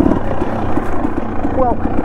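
A dirt bike engine running at steady low revs while the bike rides along a trail, with a quick, even chug.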